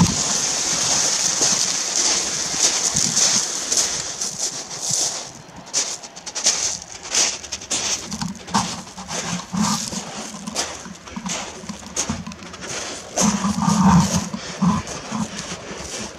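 Loose beach shingle crunching and rattling under a homemade four-wheel electric barrow and the footsteps beside it. A continuous crunching runs for the first few seconds, then gives way to separate crunching steps.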